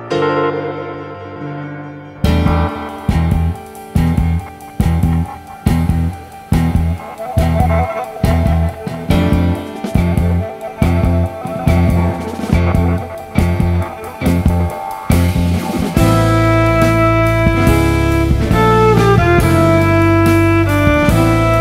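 Instrumental jazz with keyboards and upright bass. Soft held chords give way about two seconds in to a pulsing groove, about two strong beats a second. Near the end it turns to a steadier, fuller passage with a bowed viola holding long notes.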